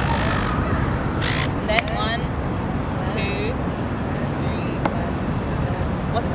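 Cup song being practised with hands and a cup on a stone seat: a few sharp claps and cup taps, about two seconds in and again near five seconds, over a steady low rumble of outdoor traffic.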